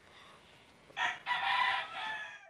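A rooster crowing about a second in: a short first note, then a longer held note that tails off.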